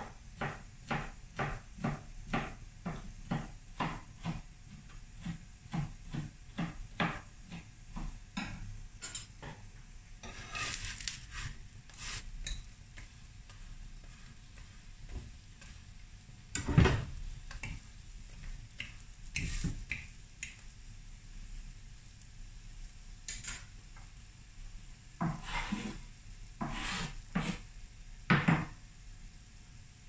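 Metal kitchen utensils clinking, first as a run of quick, even taps about twice a second for roughly eight seconds, then scattered clacks against the pan, the loudest a little past halfway. Under them is a faint sizzle from the paratha frying on the flat griddle pan (tawa).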